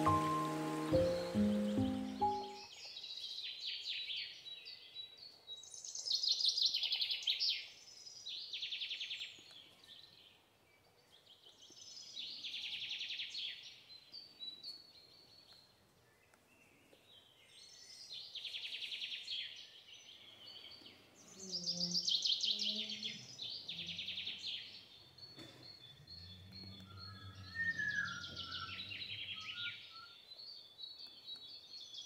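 A bird singing: about nine high phrases of rapid repeated notes, each one to two seconds long with pauses between. Background music cuts off about two seconds in.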